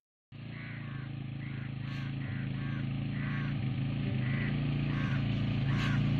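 A vehicle engine running steadily, starting about a third of a second in and growing slowly louder, with short high chirps recurring over it.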